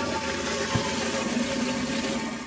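Toilet-flush sound effect: a steady rush of flushing water.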